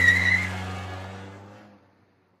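Car sound effect: an engine running with a brief tyre squeal at the start, then the engine sound dies away and fades out near the end.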